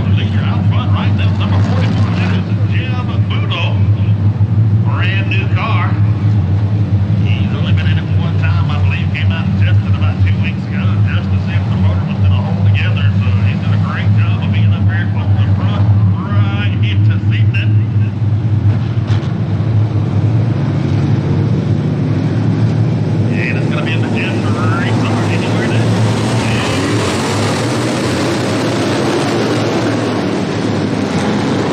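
A pack of dirt-track race cars running together, a steady low engine drone that grows louder and brighter near the end as the field picks up speed. An indistinct voice talks over it for much of the time.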